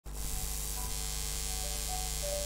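Steady tape hiss and mains hum from an old cassette transfer, with the first faint notes of a suling bamboo flute entering about a second in as a degung piece begins.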